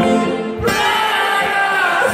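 Live rock band playing with singing, heard in a large concert hall.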